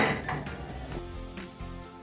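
Soft background music, with light clinks and scrapes of a table knife against a plate as butter is taken up to spread on a chapati.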